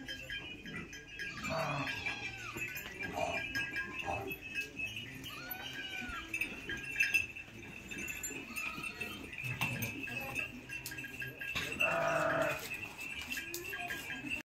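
Goat bleating several times, the loudest bleat coming near the end, over a steady high-pitched tone in the background.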